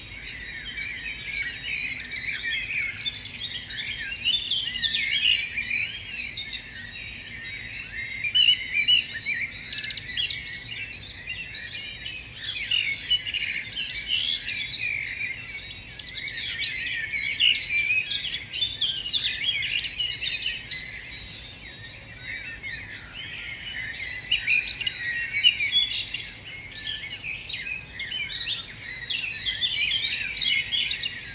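A dense chorus of many songbirds chirping and singing over one another without a break, the calls short and high.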